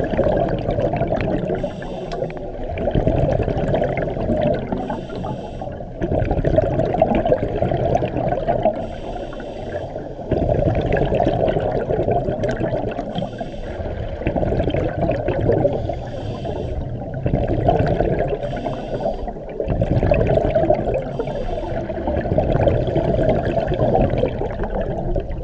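Scuba regulator breathing heard underwater: gurgling, rumbling bursts of exhaled bubbles alternating with the hiss of inhalation, swelling and fading every few seconds.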